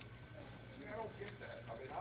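Faint, indistinct talking of people nearby, over a steady low electrical hum.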